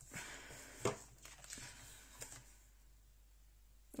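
Faint rustle of a sheet of paper being slid into place on a paper trimmer, with a sharp tap about a second in and a lighter one a little after two seconds.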